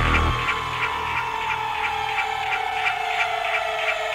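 Electronic dance music from a techno/hardcore DJ set in a stripped-down breakdown. One synth tone slides slowly downward in pitch over quick, regular ticking, while a deep bass sound fades out just after the start.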